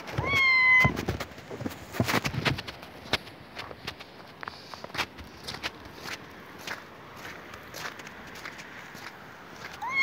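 A kitten meows once near the start: one long, high call. Scattered crunches of footsteps in snow follow, and a second meow begins right at the end.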